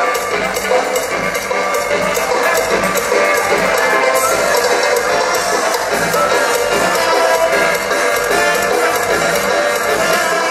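Amplified live dance-band music played through a loudspeaker system, with a steady beat.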